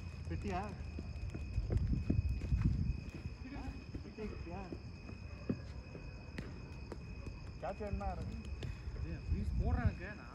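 Players' voices calling out in short bursts on an outdoor cricket practice ground, over a steady high-pitched whine. There is a low rumble a couple of seconds in and a few sharp knocks.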